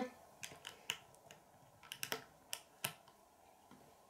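Plastic LEGO bricks clicking and tapping as they are handled and pressed onto a small build on a wooden tabletop: several faint, sharp clicks, a few in the first second and a few more between about two and three seconds in.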